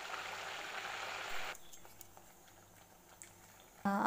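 Hot oil sizzling around a rice-dough puri deep-frying in an iron kadai. It cuts off abruptly about a second and a half in, leaving only a faint hiss.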